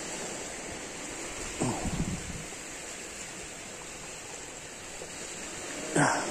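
Steady outdoor background hiss, with one brief vocal sound from a man, falling in pitch, about two seconds in.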